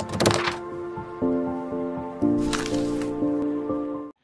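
Short intro jingle for an animated logo: sustained synth-like chords that change about once a second, with percussive hits and swooshing effects near the start and again past the middle, cutting off abruptly at the end.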